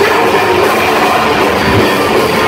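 Metallic hardcore band playing live at full volume: distorted electric guitars, drums and shouted vocals in a dense, unbroken wall of sound.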